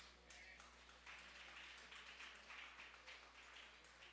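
Near silence: faint room noise over a low, steady hum.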